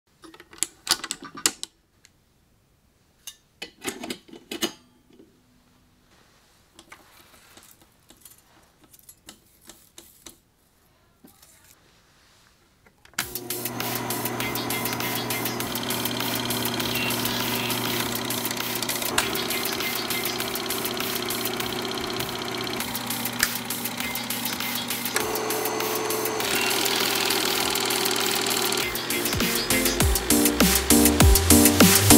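Film projector being handled and threaded: scattered clicks and knocks. About halfway through it starts up and runs steadily, a constant motor hum under a fast mechanical clatter from the film-advance mechanism.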